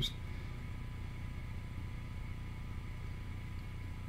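Room tone: a steady low hum with faint hiss and a thin, faint steady tone, with no distinct events.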